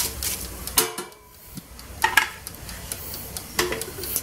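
Tongs stirring french fries in a Kyowa air fryer's non-stick basket: a few scattered clicks and scrapes of the tongs against the basket.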